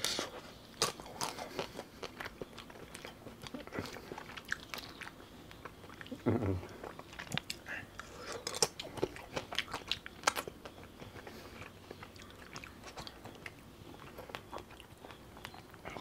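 Close-miked chewing of a broken-off piece of frozen Amul pista kulfi ice cream: irregular sharp clicks of biting and chewing, with wet mouth sounds.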